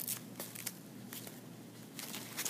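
Faint rustling and a few light clicks as hands handle and open the padded straps of a knee brace.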